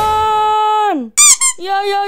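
A cartoon character's voice shouting a long drawn-out "Jangaaan!" ("Don't!"), held high and squeaky on one pitch for about a second before dropping off. A short high squeal follows, then a quick high-pitched "iya iya iya iya".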